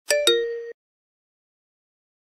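A chime sound effect: two quick bell-like notes struck in quick succession, ringing briefly before cutting off short.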